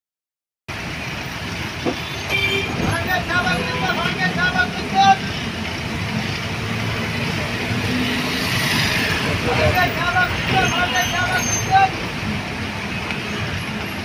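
Bus engine and road noise heard from inside the bus, with a man's voice calling out in two stretches, about three seconds in and again around ten seconds in, as a bus helper calls to passengers.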